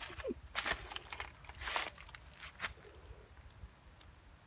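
Several short, dry rustling crunches in an uneven run, loudest in the first two seconds: long-tailed macaques scrambling over dry leaves and stone. A brief falling squeak comes near the start.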